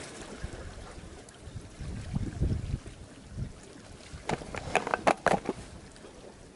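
Wind rumbling on the microphone over water washing at the rocks, with a quick run of about half a dozen sharp clicks and knocks between four and five and a half seconds in.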